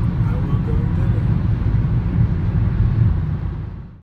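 Low, loud road and engine rumble inside a car cabin at highway speed, fading out at the very end.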